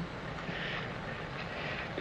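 Steady low background rumble with no clear events, and a faint soft hiss about half a second in.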